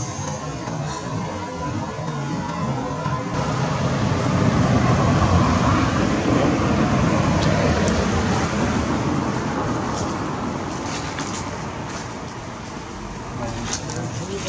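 Road traffic noise, an even rush that swells to a peak a few seconds in and slowly fades.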